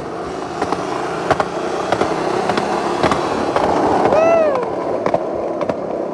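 Skateboard wheels rolling fast over pavement, a steady rumble with sharp clicks every half second or so. It grows a little louder toward the middle. A single drawn-out voice call comes about four seconds in.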